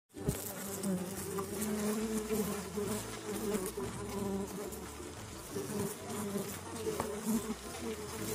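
Bees buzzing in flight: several overlapping drones that waver in pitch.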